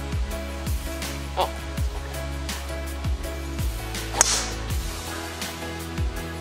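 Background music with a steady beat. About four seconds in comes a single sharp crack, the loudest sound: a golf club striking the ball off the tee.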